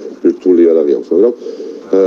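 Only speech: a man talking over a video-call link, with drawn-out vowels and short breaks.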